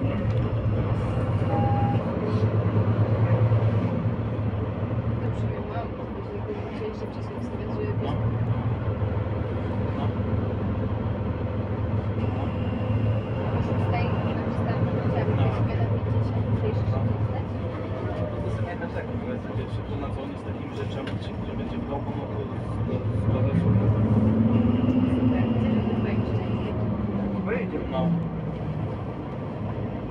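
Inside a Mercedes-Benz Citaro C2 city bus under way: its diesel engine and ZF EcoLife automatic gearbox run with a steady low drone that swells and eases as the bus pulls and slows, with a brief rising-then-falling whine about three-quarters of the way through.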